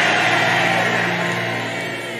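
Background church music: a held chord of steady low notes that slowly gets quieter, with a fading wash of congregation noise.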